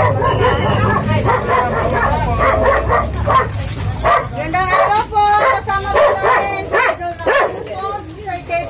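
A dog barking and yipping in short, repeated calls, mixed with people's voices, more often in the second half.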